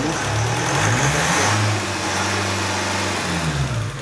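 Hyundai Santa Fe 2.0 common-rail diesel four-cylinder engine revved up from idle, held at raised revs for about two seconds, then falling back toward idle near the end.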